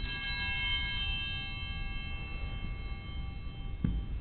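Altar bell struck once at the elevation of the chalice, ringing with several clear tones that fade over about three seconds. A soft knock near the end as the chalice is set down on the altar.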